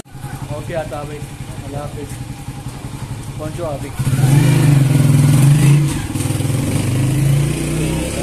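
Motor vehicle engine running with a low, rapidly pulsing hum that grows clearly louder about four seconds in. A few brief snatches of voice come through near the start.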